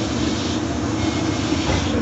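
Steady rumble of a moving passenger train heard from inside the carriage.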